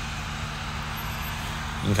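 Steady in-cab noise of a Jeep Wrangler 4xe: the climate blower running on high, an even rush of air from the vents over a low steady hum from the idling engine.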